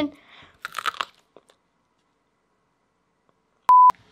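A brief crunching rustle about a second in, then a short, loud, steady electronic beep at a single pitch near the end, like an inserted bleep tone.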